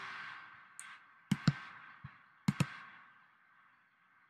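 Computer mouse clicks: two quick pairs of sharp clicks about a second apart, over a faint hiss that fades away.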